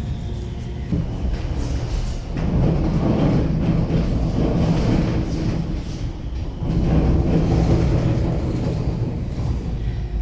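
A passenger tram running, heard from inside the carriage: a steady low rumble that grows louder about two seconds in and again about seven seconds in.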